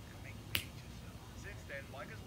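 A single short, sharp click about half a second in, over faint talk.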